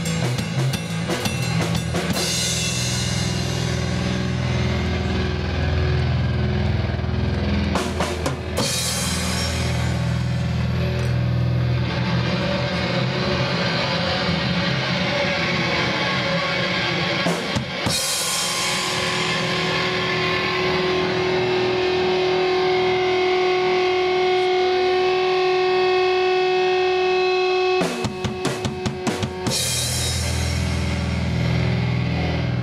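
Live rock band of drum kit with cymbals and electric bass guitar playing loudly, heard through a club sound system. Quick runs of drum hits come about 8 s in, around 18 s and near the end, and a long note is held through much of the second half.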